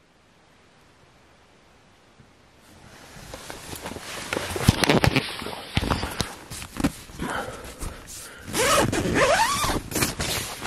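Nylon tent door being unzipped, a run of rasping zipper strokes with rustling tent fabric that starts after a quiet couple of seconds and grows loud. Near the end a voice cries out.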